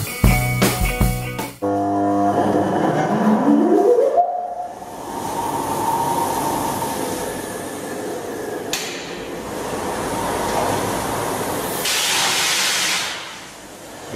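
Brief music, then an electric motor winding up with a rising whine as it starts turning over the Pinchbeck beam engine, which is driven by an old Ferris wheel motor rather than by steam. The engine's machinery then runs with a steady rumble and clatter, with a louder hissing rush near the end.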